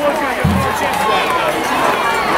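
Football crowd shouting and cheering, many voices overlapping, with a low thump about half a second in.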